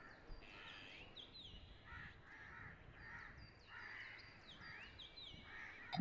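Faint crows cawing several times, with thin, high chirps of small birds above them.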